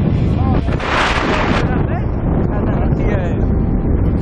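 Freefall wind buffeting the camera's microphone: a loud, steady rumble, with a brief brighter rush about a second in.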